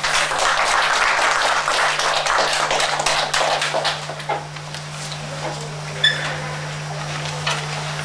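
Audience applauding, dense clapping for about four seconds that then thins out to a few scattered claps.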